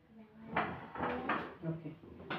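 Voices talking, with a short knock a little over a second in.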